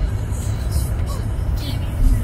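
Steady low rumble of road and engine noise inside a moving car's cabin, with a few brief rustles.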